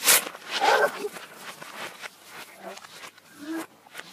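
Human voice sounds played backwards, garbled and unlike normal speech. A short, loud rustle at the very start fits a sheet of paper being torn, also played in reverse.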